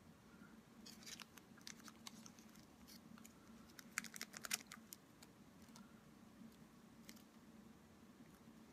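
Thin plastic sheet crinkling as it is handled and folded: faint scattered crackles about a second in, then a louder cluster of crackles around four seconds in, over a faint steady hum.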